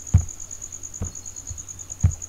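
A cricket trilling steadily in one high, evenly pulsed tone, with a soft low thump near the start, another about a second in, and a third at the end.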